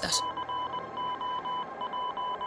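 Electronic beep tone of one pitch, pulsing on and off in a quick run of short and longer beeps, like a telegraph-style sound effect.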